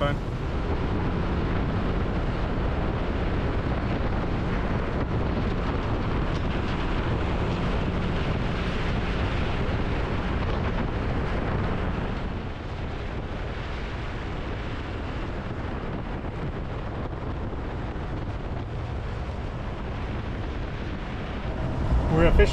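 Wind rushing over the microphone with the steady running noise of a 2016 Honda Gold Wing F6B at highway speed. The noise drops a little about halfway through.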